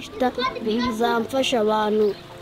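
A young boy speaking in a language other than English, in a calm, even voice.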